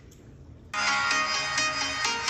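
Electronic dance music starts suddenly about two-thirds of a second in, played through the Samsung Galaxy S24 Ultra's own speaker.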